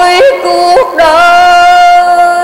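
A woman's voice chanting religious verse in a slow, sung recitation style. It holds long, steady notes, steps briefly up and down in pitch, and has two short breaks in the first second.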